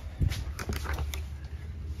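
An RV two-way fridge's freezer door being unlatched and pulled open: a dull thump about a quarter second in and a few light clicks, over a low steady hum.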